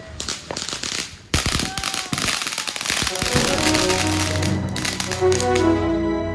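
Fireworks crackling and popping in quick succession, with one loud bang about a second in. About halfway through, music comes in and carries on over them.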